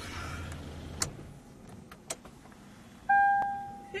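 Car interior: a low engine hum that drops away after a click about a second in, then near the end a car warning chime begins, a clear ding that fades and repeats about once a second.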